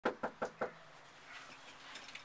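Knuckles knocking on a front door: four quick, evenly spaced raps within the first second.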